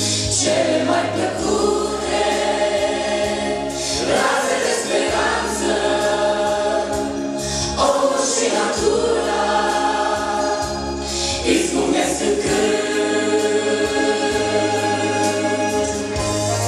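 A worship group of men and women singing a Romanian worship song together into microphones over band accompaniment with a steady bass line. Strong accents fall about every four seconds.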